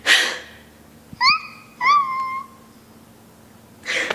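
A girl's exaggerated fake crying: two loud sobbing gasps at the start, then two short, high, squeaky rising whimpers a second or so in, and another gasping breath near the end.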